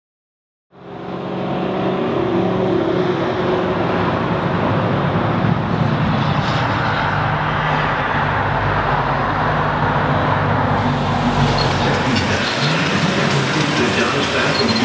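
Loud, steady mechanical running noise with a low hum, starting suddenly about a second in; from about eleven seconds in it turns brighter and busier.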